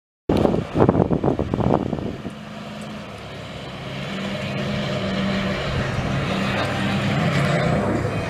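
Pickup truck engine running at low speed as it tows a race car on an open trailer past, a steady low hum that slowly grows louder. It is preceded by about two seconds of loud, irregular noise.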